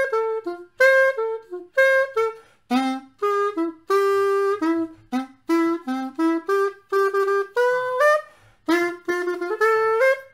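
Xaphoon, a small single-reed pocket woodwind, playing a quick run of short separate notes: arpeggios of three major chords strung together into a basic blues pattern. There is one longer held note about four seconds in and a few notes that slide up in pitch near the end.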